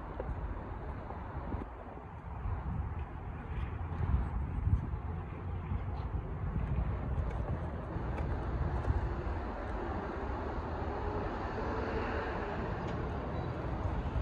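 Wind rumbling on a phone's microphone, with a pickup truck driving through the parking lot in the background.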